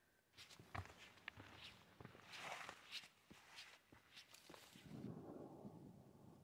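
A hiker's faint footsteps crunching on a trail, about two steps a second, with a low rustle taking over near the end.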